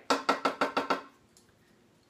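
Wooden spatula rapping on a cast iron skillet of scrambled eggs: a quick run of about eight ringing knocks within the first second.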